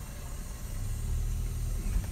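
Car engine running low and steady, heard from inside the cabin as the car creeps forward; the deep rumble swells about a second in.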